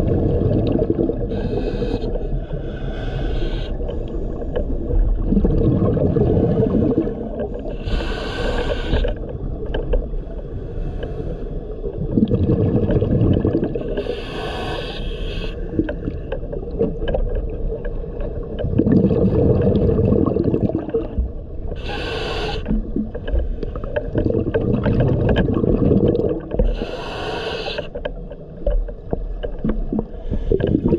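Scuba diver breathing through a regulator underwater: a longer low rumble of exhaled bubbles every six or seven seconds, each followed by a short hissing inhale, four breaths in all.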